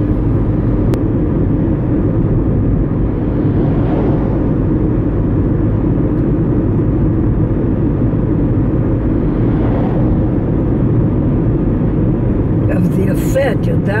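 Steady low rumble of car road noise heard from inside the cabin while driving on a highway, swelling briefly near ten seconds as an oncoming truck passes.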